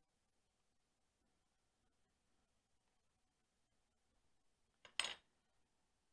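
Near silence: room tone, broken once near the end by a short, sharp clink of a knife against an aluminium foil baking tray.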